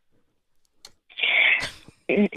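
About a second of near silence, then a short, breathy laugh from a woman coming through a telephone line.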